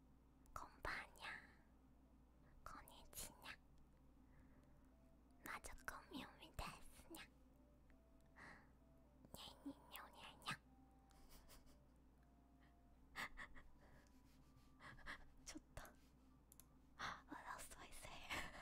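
A woman whispering softly close to a sensitive microphone, in short breathy phrases with pauses between them, over a faint steady hum.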